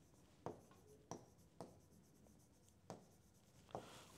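Faint strokes of a marker writing on a whiteboard: about five short scratches spread across the few seconds.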